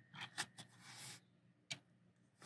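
A few light clicks, a short scrape about a second in, and one more sharp click near the end: a small die-cast toy car being handled and set down on the steel platform of a digital pocket scale.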